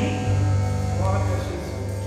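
Worship band music: held chords over a steady bass, the sound beginning to fade out near the end.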